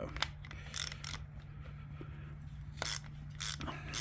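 Ratchet wrench with a half-inch socket backing out the timing-tab bolt on a Ford flathead V8: a few scattered short clicks and scrapes. A faint low hum runs underneath.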